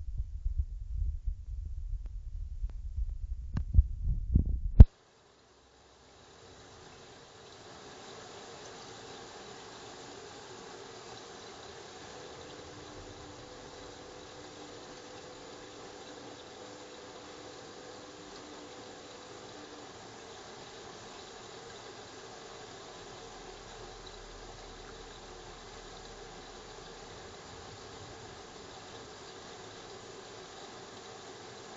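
Bosch Logixx WFT2800 washer dryer drum tumbling a duvet cover in the wash, a low rumble with irregular knocks, which cuts off abruptly about five seconds in. After a moment of silence only a steady, faint hiss remains.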